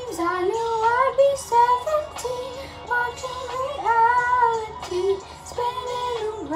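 A female voice singing a melody without clear words, sliding and stepping between notes in short runs.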